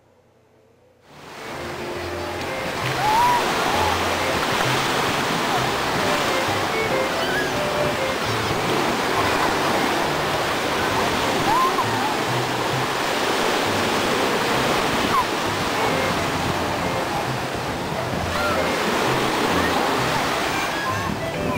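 Ocean surf washing onto a beach, a steady rushing hiss, with jazz music playing underneath. It fades in about a second in, after a moment of near silence.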